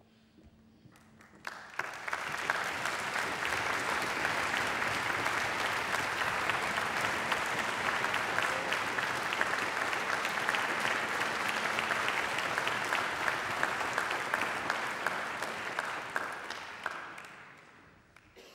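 Audience applauding: the clapping builds up about two seconds in, holds steady, and dies away near the end.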